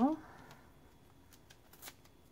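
Faint, light clicks and rustles of hands handling a die-cut paper card panel backed with foam tape strips, the most noticeable one near the end.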